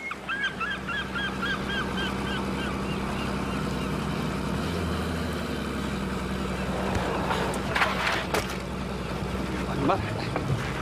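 Seagull calling in a quick run of short repeated cries, about four a second, over the first three seconds, over the steady low hum of a small wooden fishing boat's engine running.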